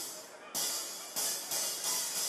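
Drum-kit cymbals struck about four times, each left ringing, with almost nothing in the low end beneath them.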